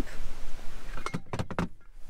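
A few short knocks and clunks as gear is handled and the under-floor storage lid is lifted in a car's rear cargo area, after about a second of steady outdoor background hiss.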